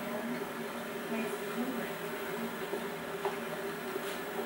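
Faint, indistinct speech over a steady low hum and hiss, with a small tick about three seconds in.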